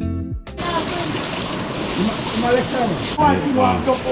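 Background music that ends about half a second in, then indistinct voices talking over a steady outdoor background noise, with one brief sharp noise about three seconds in.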